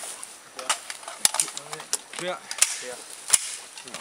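Rifle actions clicking and clacking irregularly as several cadets work their cocking handles and dry-fire during an unload drill, about half a dozen sharp metallic clicks. Voices call 'clear' between them.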